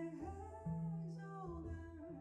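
Female jazz vocalist singing long held notes, accompanied by pizzicato upright bass and piano.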